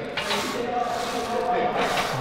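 A steady rubbing, hissing noise during a Smith machine press, with a faint held squeal in the middle.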